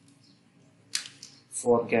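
A few computer keyboard keystrokes clicking about a second in, then a voice starts speaking near the end.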